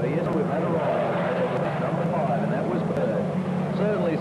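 Spectators chattering over a steady low drone.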